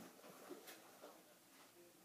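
Near silence: room tone, with a few faint soft handling noises from a plush puppet being moved.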